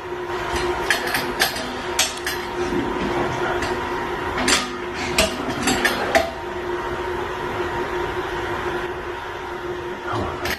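Metal cymbal stands being adjusted and set up by hand: scattered clanks and clicks of the stand hardware, thickest in the first six seconds, over a steady hum.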